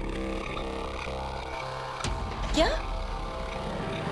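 Dramatic background score: a low sustained drone of held tones, with a sudden hit about two seconds in. A woman's short startled 'kya?' follows near the middle.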